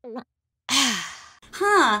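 A loud, breathy sigh falling in pitch, about half a second after the last short note of a laugh. A spoken word starts near the end.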